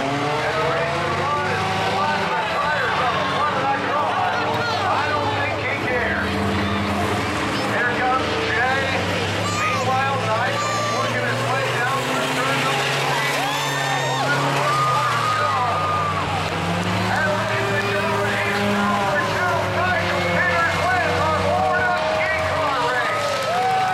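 Several race cars' engines running and revving around an oval track, with spectators talking close by throughout.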